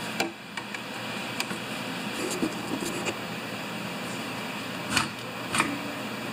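Light clicks and taps of a hand tool working on a plastic mower part on a workbench, with a sharper knock about five seconds in and another just after, over a steady workshop hum.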